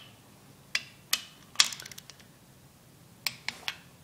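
Socket wrench on the jam nuts of an axle girdle's load bolts, being tightened to 20 foot-pounds: scattered sharp metal clicks, with a quick run of ratchet clicks about one and a half seconds in and three more clicks near the end.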